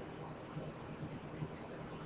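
Faint background hiss with a few thin, steady high-pitched tones and a tiny tick about three-quarters of a second in: low-level recording noise, room tone.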